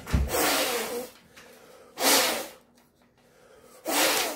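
Hard breath blown across the top of a sheet of paper held at the lips, lifting the paper. It comes as a rush of air about a second long that thumps on the microphone as it starts, then shorter rushes about two seconds in and at the end.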